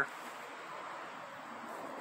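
A car going past, heard as a steady hiss of tyre and engine noise.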